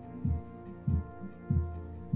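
Background music under a pause in play: a held chord with a low, regular thump about every two-thirds of a second.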